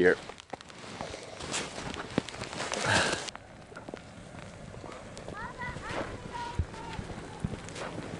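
Footsteps crunching through deep snow for about three seconds, stopping abruptly, followed by a few faint short rising squeaks.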